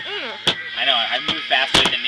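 Hands slapping down on a pile of playing cards on a patio table during a fast slapping card game: a sharp slap about half a second in, another a little past one second, and a louder double slap near the end.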